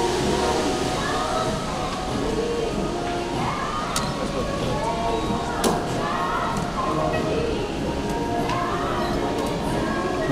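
Indistinct voices and music over a steady background hum, with two sharp clicks, about four and nearly six seconds in.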